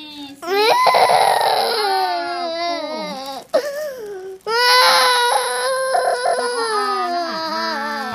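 A young child crying in distress as his teeth are examined and brushed, in two long, high, wavering wails with a short break for breath a little before halfway.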